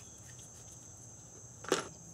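A faint, steady high-pitched insect trill, with one short sharp sound near the end.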